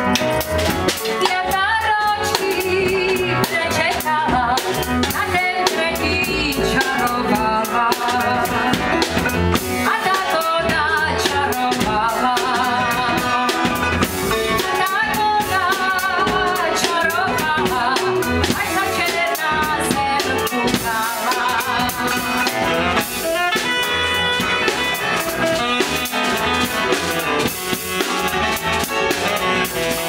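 Live jazz quintet playing: cimbalom, saxophone, piano, double bass and drum kit, the drums keeping a busy rhythm under a wavering melody line.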